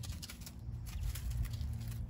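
A quail pecking and scratching in dry leaf litter, heard as faint scattered light ticks and rustles over a low rumble.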